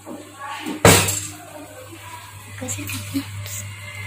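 Stainless steel kitchenware handled at a gas stove: one sharp metallic clack about a second in, then faint clinks and handling sounds over a steady low hum.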